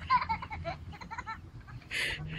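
A person laughing in short, repeated pitched bursts of sound that grow quieter and die away about a second and a half in.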